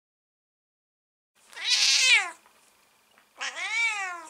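A cat meows twice. The first meow comes about a second and a half in and the second near the end. Each is a drawn-out call, and the second rises and then falls in pitch.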